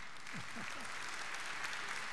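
Congregation applauding steadily, with a voice or two from the crowd faintly heard about half a second in.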